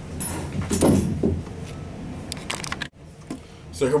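Handling noise as the camera and a tenor saxophone are moved: irregular rustling and several sharp clicks. The sound cuts out suddenly and briefly a little before three seconds in, and a man's voice starts at the very end.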